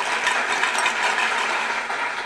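A steady rattling noise, as loud as the speech around it.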